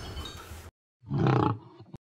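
One short, low growling roar about a second in, lasting about half a second, as a menacing threat. Dead silence comes just before and just after it.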